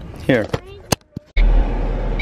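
A few sharp clicks over a quiet car interior, then, about a second and a half in, a loud, steady, low car-cabin rumble cuts in abruptly.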